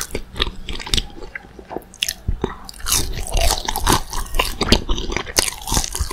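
Crunching bites and chewing of a breaded, fried McDonald's spicy chicken nugget, in irregular crackles with a short lull about one and a half seconds in before the crunching picks up again.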